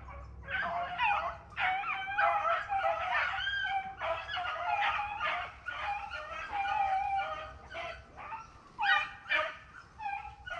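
A pack of rabbit dogs running a rabbit: several dogs baying and yelping over one another almost without a break, with a short lull about eight seconds in before a loud call.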